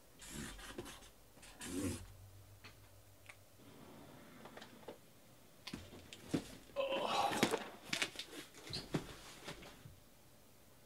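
A cardboard shipping case being gripped and lifted off a table: cardboard rubbing and scraping with soft knocks, in a burst near the start and a longer one about seven seconds in.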